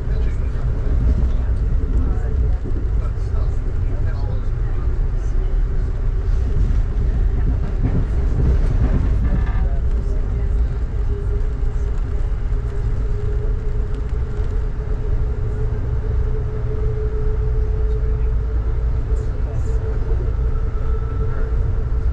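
Steady low rumble of a moving passenger train heard from inside the car, wheels running on the rails, with a steady mid-pitched hum over it.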